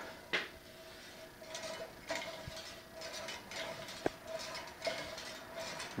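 Scattered light metallic clicks and clinks from the homemade gravity wheel's metal arms and weights being handled and moving, with a sharper click near the start and another about four seconds in, over a faint steady hum.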